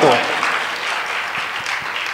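Audience applause: a steady patter of many hands clapping in a hall, fading slowly.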